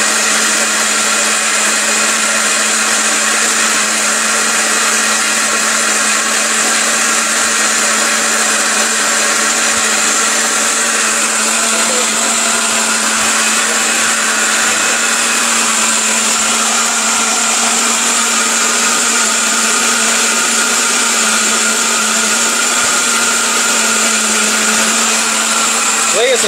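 Electric mixer grinder running steadily at one unchanging pitch, grinding ginger and garlic with a little water into a paste.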